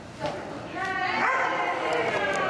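A dog yipping and whining in high-pitched calls, starting about three-quarters of a second in, with voices alongside.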